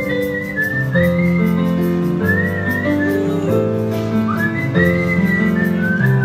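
A man whistles a melody into a microphone in clear high phrases, each sliding up into its first note. Under it, sustained chords are played on an electric stage piano.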